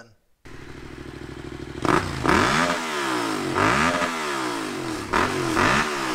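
Parallel-twin motorcycle engine with a carbon slip-on exhaust, idling and then revved in three throttle blips. Each blip rises sharply in pitch and falls back to idle.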